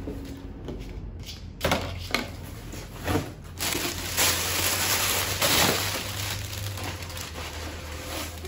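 Plastic packaging crinkling as it is pulled out of a cardboard box, with the box's flaps rustling. After a couple of short rustles, the crinkling is most continuous and loudest in the middle.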